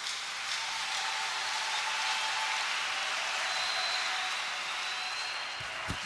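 A large congregation applauding steadily after a prayer's closing "Amen".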